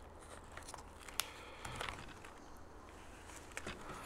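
Faint handling noise of a foam piece being pressed into a foam model glider's fuselage, with one sharp click about a second in and a soft rustle shortly after.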